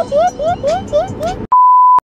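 A quick run of short, rising, pitched chirps, about five a second, then, about a second and a half in, a loud steady one-tone censor bleep that lasts half a second and cuts off sharply.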